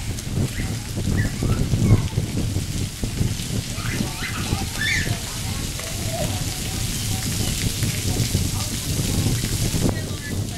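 Splash pad ground fountain jets spraying, water pattering steadily onto wet concrete, with children's voices breaking in now and then.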